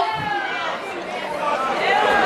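People talking: speech and chatter, with no other sound standing out.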